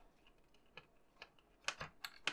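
A few faint, sparse clicks from a small screwdriver tightening a screw into a scale-model car chassis.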